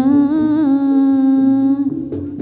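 A singer holding one long sung note with a slight waver, breaking off just before the end, over quieter Javanese gamelan accompaniment.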